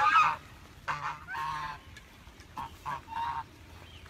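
A flock of domestic geese honking, a string of about six calls, one of them drawn out about a second and a half in.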